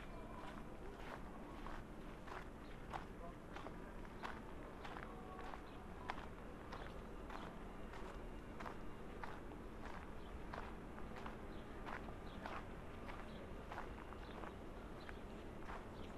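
Footsteps on a gravel path at an even walking pace, about two steps a second.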